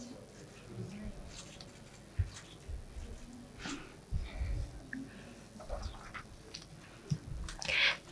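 Quiet hall ambience: faint murmuring voices with scattered soft knocks and rustles.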